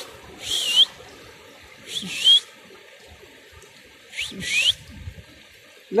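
A bird calling three times, about two seconds apart, each call a short raspy note that sweeps up into a whistle, over the faint steady rush of a shallow rocky stream.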